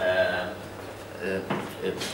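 A man's voice in a small room making brief, hesitant speech sounds between pauses, with a light knock about one and a half seconds in.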